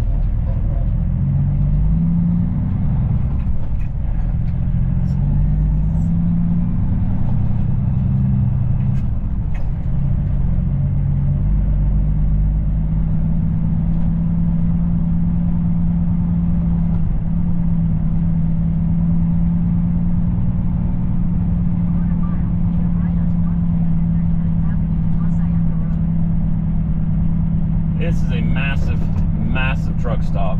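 Semi truck's diesel engine heard from inside the cab as it pulls away at low speed. Its hum steps up and down in pitch over the first dozen seconds, then holds a steady drone.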